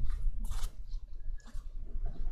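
Soft paper rustle of a sheet of absorbent paper being pressed onto a wet ink painting and lifted off, blotting ink that has bled into the paper. A steady low hum runs underneath.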